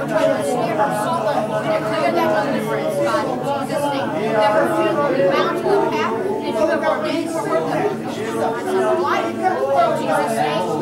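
Many voices praying aloud at once in a large hall, overlapping into a steady, unintelligible murmur of speech.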